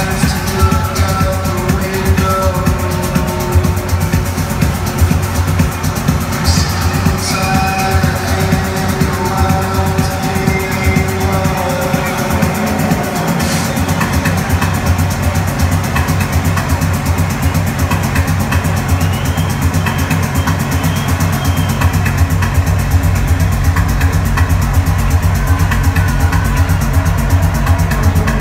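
Techno DJ set playing loud over a club sound system, recorded in the room, with a steady driving bass beat. Melodic synth lines in the first half fade out, the bass drops out briefly about twelve seconds in, then the beat returns.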